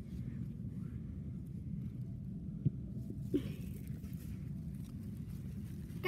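Quiet outdoor background with a low steady rumble and two faint clicks near the middle.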